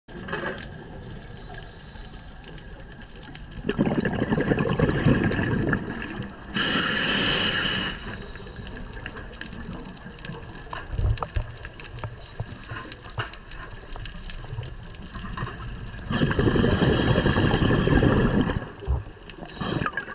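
Scuba regulator breathing underwater. A rumbling burst of exhaled bubbles comes about four seconds in, a short hiss of inhaling through the regulator follows at about six and a half seconds, and a second long bubbling exhale starts at about sixteen seconds.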